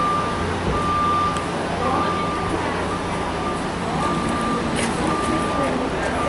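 Vehicle backup alarm beeping on one steady tone, about one beep a second, with the voices of people talking in the background.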